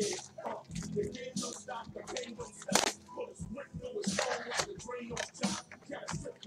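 Crinkling and crackling of plastic shrink-wrap and cardboard as gloved hands unwrap and open a sealed box of trading cards. The sound comes as a run of short sharp crackles, the loudest a little under three seconds in, over faint background music.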